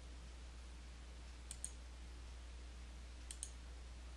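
Two faint computer mouse clicks, each a quick press and release, about two seconds apart, over a low steady hum.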